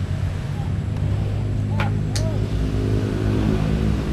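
A motor vehicle engine running nearby, a steady low hum that grows louder after about a second, with two sharp clicks close together about two seconds in.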